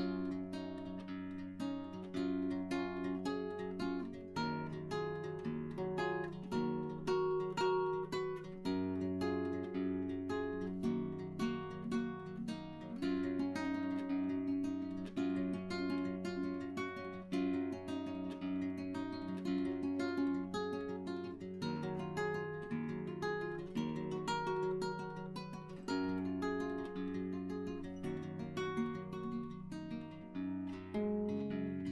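Background music: an acoustic guitar playing a quick run of plucked notes over a steady bass.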